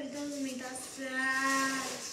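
A girl's wordless drawn-out voice: a moo-like tone that slides down in pitch, then holds one steady note for most of a second before stopping.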